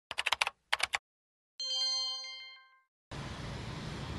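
Broadcast news graphic sound effect: two quick runs of clicking ticks, then a single bright chime that rings out and fades over about a second. Near the end a steady hiss of the open outdoor live microphone comes in.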